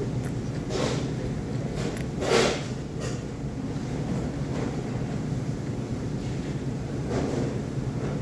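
Steady low hum of restaurant background noise, with a few brief hissing sounds on top. The loudest of these comes about two and a half seconds in.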